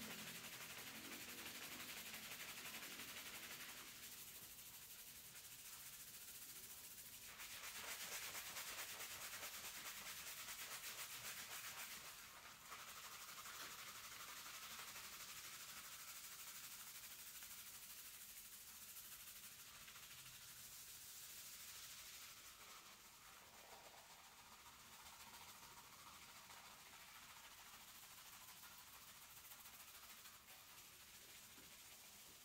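Fingertips scrubbing shampoo lather on a scalp during a barbershop hair wash: a faint, continuous rubbing of hands through foam and wet hair, a little louder for a few seconds about a third of the way in.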